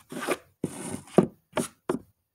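A white pencil scratching quick sketch strokes across a dark drawing surface, about five short scrapes in two seconds with one longer stroke near the middle.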